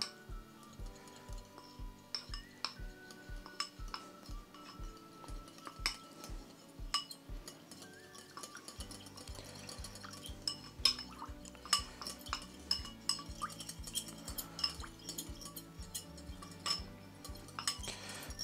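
A small metal utensil clinking and scraping against a small ceramic bowl in quick, irregular taps while fresh yeast is stirred into lukewarm water. Soft background music with a steady low beat runs underneath.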